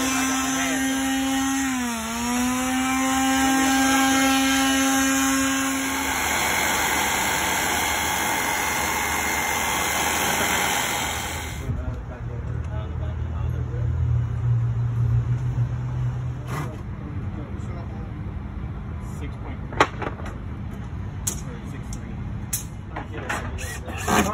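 Power tool motor whining at a steady pitch; about two seconds in it drops briefly in pitch, as if bogging under load, then picks back up, and then gives way to a steady rushing hiss. After a sudden cut, a low hum and scattered sharp knocks and taps.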